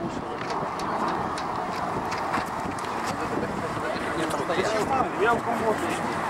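Steady roar of a low-flying Antonov An-124 Ruslan's four Progress D-18T turbofan engines, under people talking, with scattered light knocks.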